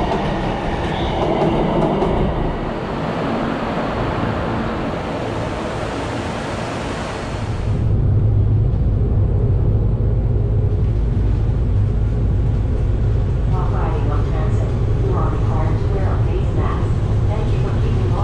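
Miami Metrorail train pulling into an elevated station, with a loud, even hiss. About eight seconds in the sound cuts abruptly to the ride aboard an elevated transit train: a steady low rumble.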